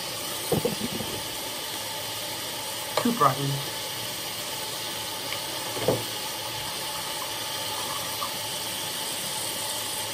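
Steady hiss of water running from a bathroom sink tap, with a few short mumbled vocal sounds about half a second, three and six seconds in.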